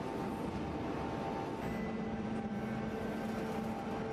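Steady industrial machinery noise with a droning hum; about a second and a half in, the hum shifts to a lower pitch.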